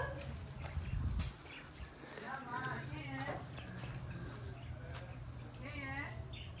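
A voice calling out from a distance: one long wavering call about two seconds in and a shorter one near the end.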